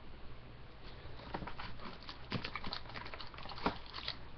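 Foil-wrapped trading card packs and the cardboard box being handled: a string of light crinkles, rustles and clicks, with one sharper click near the end.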